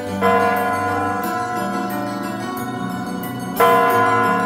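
A clock's bell striking midnight: two strokes about three and a half seconds apart, each ringing on, over background music with a steady beat.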